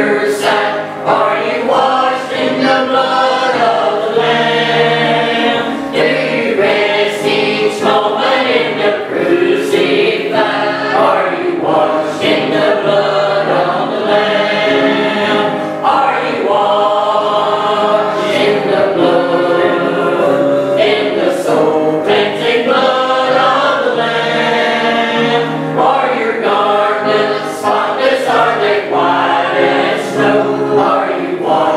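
A small church choir of men and women singing a hymn together, in sustained phrases with short breaths between them.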